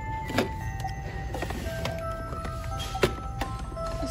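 Two sharp plastic clacks, about half a second in and again about three seconds in, as the handset of a novelty Halloween rotary-phone decoration is picked up and handled; the toy phone itself plays no sound because it doesn't work. Background music with steady held notes runs underneath.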